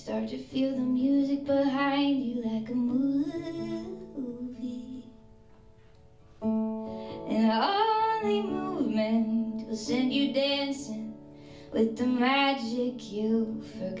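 A woman singing a slow song, accompanying herself on a fingerpicked acoustic guitar. The music goes quiet briefly about five seconds in, then voice and guitar come back.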